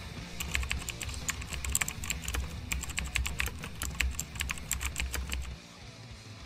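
Typing sound effect: a quick, uneven run of keystroke clicks over a low hum, both stopping about half a second before the end.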